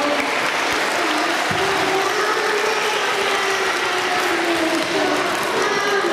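Many children clapping in dense, steady applause.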